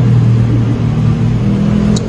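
A steady low mechanical hum, strongest in the first half.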